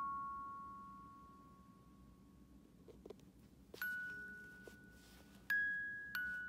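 Mechanical music box inside a porcelain doll playing single plucked metal notes, each ringing out and fading. The notes come slowly here: one dies away over the first two seconds, then after a gap with a few faint clicks a new note sounds near the middle and another near the end.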